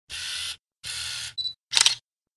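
Camera sound effects: two half-second rushes of noise, then a brief high beep, then a quick burst of sharp shutter-like clicks near the end.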